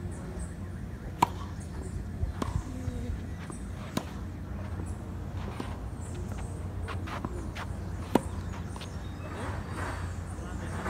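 Tennis ball struck by rackets during a rally: a few sharp pops several seconds apart, the loudest about a second in and another near the end, with fainter hits and bounces between.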